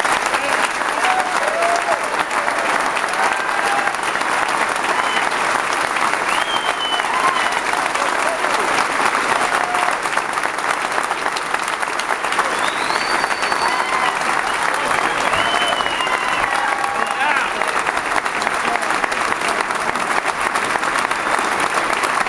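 Large audience applauding steadily, with a few voices calling out over the clapping.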